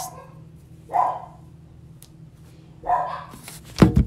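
A dog barking twice, short barks about two seconds apart, with a sharp thump just before the end.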